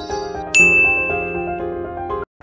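Intro jingle music with a bright chime ding about half a second in that rings on for about a second.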